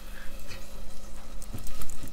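Aluminium pressure cooker being shifted and swirled on a gas hob's metal grate: a few light knocks and scrapes of pot on grate, near the middle and again later, over the low steady sound of the sardine curry cooking in it.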